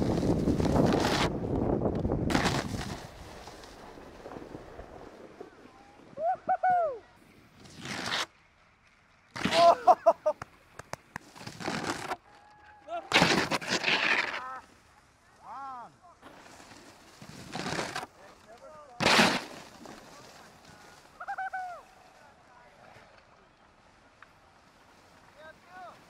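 Snowboards sliding and scraping on snow: a steady rush at first, then a string of short rasps as edges carve and bite. Several short shouted hoots come between the scrapes.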